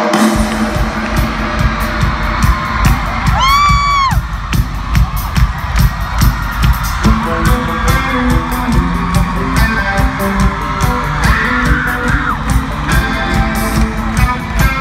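Live rock band playing loudly through an arena PA, heard from the crowd, with a steady drum beat. A single high shriek rises and falls about three and a half seconds in, and guitar and bass notes fill in from about halfway.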